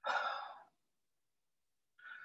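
A man sighs, a breathy exhale about half a second long, right at the start.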